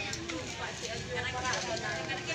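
Indistinct voices talking over the steady background noise of a busy market.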